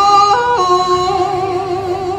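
A woman singing Khmer smot, a Buddhist chant, solo into a microphone: one long held note that steps briefly up in pitch about a third of a second in, drops back about half a second later, and wavers slightly as it is held.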